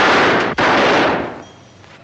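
Machine-gun fire: a sustained burst, a brief break about half a second in, then a second burst that stops about a second in and dies away.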